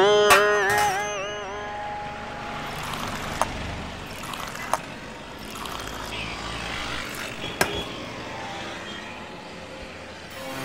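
Steady background noise with a low hum, like passing traffic, broken by three sharp clinks of tea glasses. Over the first two seconds a held pitched tone wavers with small regular dips and then fades.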